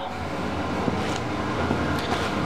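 Steady low mechanical hum.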